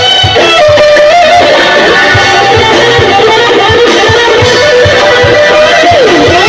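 Live band playing loudly: electric guitars over a steady drum beat, with a lead melody line bending in pitch.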